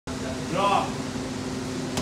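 A bare-foot kick slapping a handheld focus mitt once near the end, over a steady mechanical hum. A short voice call comes about half a second in.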